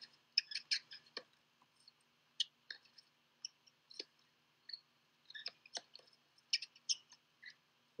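Faint, scattered short clicks and ticks at irregular intervals, a few somewhat louder than the rest.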